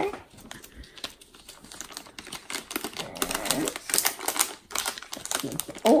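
Crinkling and crackling of a shiny foil blind-bag packet as a hand rummages inside it, a rapid run of small irregular clicks.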